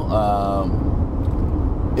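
Steady low rumble of road and engine noise inside the cabin of a 2020 Toyota RAV4 cruising on a highway.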